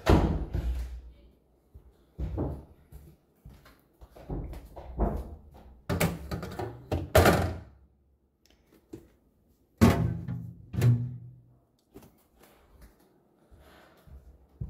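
Bumps and thunks from groceries being handled and put into a refrigerator, in several separate bursts with quiet gaps between.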